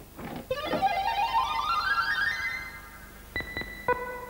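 Electronic game-show sound effect: a quick run of plucked-sounding synthesizer notes climbing in pitch, then two short sharp chimes near the end. It is the jingle that marks a chosen letter, here an A, being revealed on the puzzle board.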